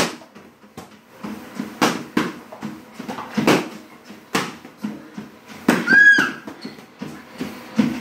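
Boxing gloves striking focus mitts in irregular single punches, each a sharp slap. A short high squeak comes about six seconds in.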